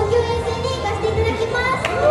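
Several young women's voices calling out over microphones through a PA, overlapping one another, over the steady bass of a backing track that fades near the end.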